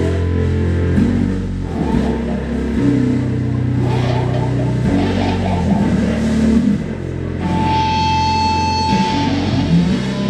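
Live rock band playing slow, long held low notes on electric guitar and bass that change every second or two. Near the end, a high steady tone is held for about two seconds.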